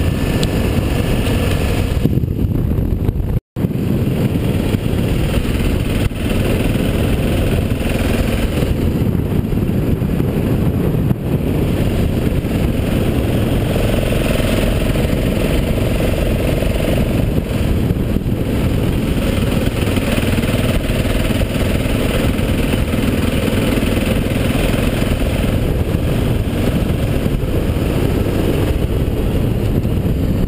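BMW F650GS motorcycle running steadily under way, recorded on the moving bike, with engine and wind noise blending into a dense steady rumble. The sound cuts out for an instant about three and a half seconds in.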